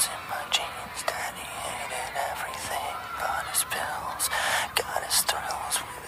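Quiet, thin-sounding vocal line from a rap song, whispered in character, with sharp hissing consonants over faint music and no bass.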